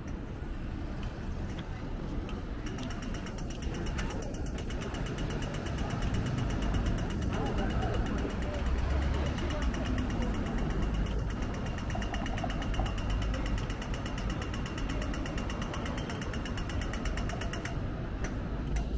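Pedestrian crossing signal ticking rapidly, a fast even train of sharp clicks that starts about three seconds in and stops just before the end: the walk signal's audible cue. Cars run through the intersection underneath.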